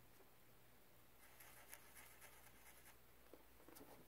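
Faint scratching and tapping of a Sharpie felt-tip marker on paper as a dot is marked, a few soft strokes from about a second in until near the end, over quiet room tone.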